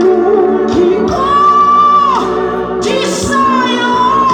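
A woman singing into a microphone over sustained keyboard chords, holding two long high notes, the first about a second in and the second from about three seconds in.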